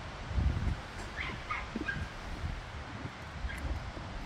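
A dog barking and yipping faintly, a few short calls about a second in, over a low rumble of wind on the microphone.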